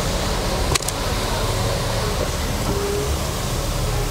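Steady low noise of a car heard from inside its cabin, with one sharp click about three quarters of a second in.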